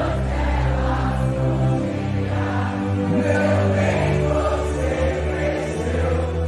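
Live rock concert music: a slow passage with sustained low notes under many voices singing together.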